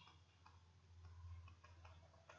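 Near silence with a few faint, irregular ticks of a pen stylus on a tablet screen as a word is handwritten.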